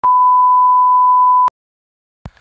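A single steady, high-pitched electronic beep, one pure tone like a TV test tone or censor bleep, laid on a static-glitch transition; it lasts about a second and a half and cuts off suddenly.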